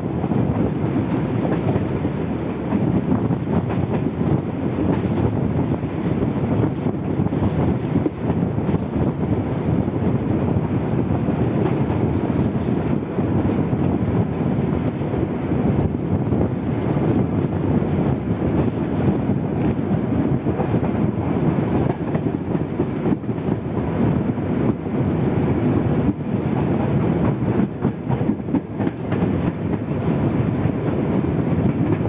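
Sri Lankan Railways rail car T1 515 running along the track, heard from beside its window: a steady noise of wheels on rail with a few faint clicks.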